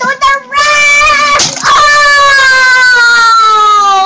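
A child's loud, drawn-out vocal cry: two short calls, then one long held note that slides slowly down in pitch, with a brief noise in the middle.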